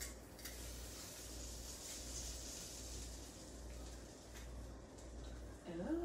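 Faint sizzling from butter heating in a skillet on a gas stove, a little louder in the middle, with a few light ticks of kitchen handling.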